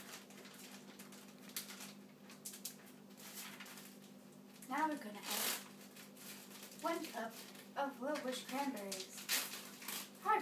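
A steady low hum, with soft, faint talking or laughter starting about five seconds in and again near the end.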